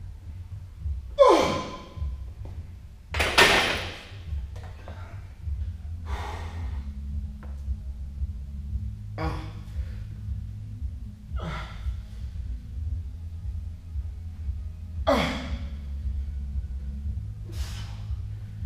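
A man groans and gasps hard twice, then keeps breathing heavily in long gasps every two or three seconds, out of breath after a heavy front squat set. A steady low hum runs underneath.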